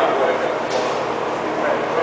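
Indistinct chatter of several people talking at once, steady throughout, with no single voice clear.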